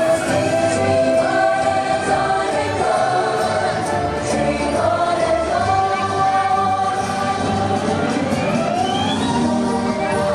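Parade soundtrack music with a choir singing long held notes, and a rising sweep in pitch near the end.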